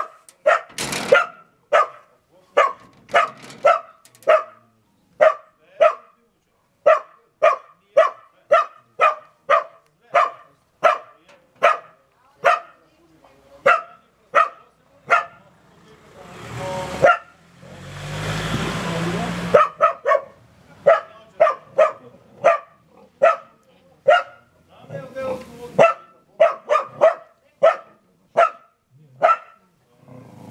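A dog barking over and over in short, sharp barks, about two a second. A burst of rustling noise lasting about three seconds breaks in around the middle.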